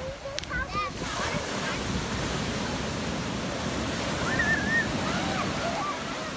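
Ocean surf washing up over the sand in a steady rush of water. A child's high voice calls out briefly, once near the start and again about four and a half seconds in.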